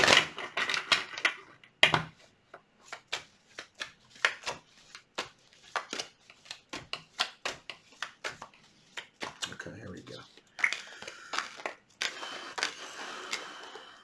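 Tarot cards being shuffled and handled: a run of irregular clicks and snaps, then a steadier rustling shuffle over the last few seconds.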